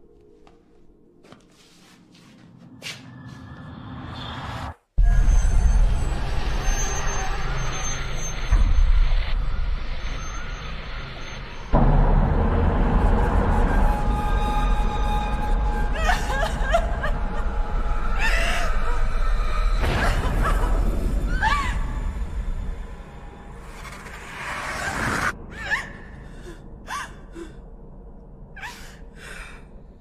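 Dark film score and sound design: a swell builds for about five seconds and cuts off abruptly, then a loud, deep rumbling drone crashes in, with sudden louder hits twice more. Near the two-thirds mark it drops back to a quieter, unsettled bed with scattered clicks and short sweeping sounds.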